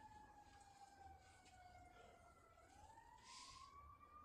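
Faint siren wailing: a single tone falls slowly, then turns and rises again about two and a half seconds in.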